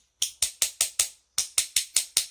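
Two metal spoons held back to back, played as a percussion instrument, clacking against the cupped palm: a quick even run of about five clicks a second, a short pause, then four more.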